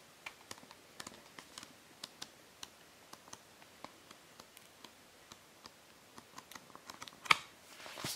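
Pages of a glossy Blu-ray digibook booklet being turned by hand: faint, irregular paper ticks and clicks, a few every second, with one louder click near the end as the book is handled shut.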